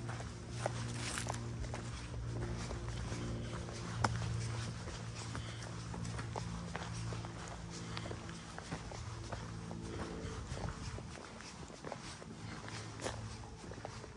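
Footsteps of a hiker walking downhill on a rocky, dirt-and-root trail: irregular taps and scuffs, with a sharper step about four seconds in. Under them runs soft background music of sustained low chords.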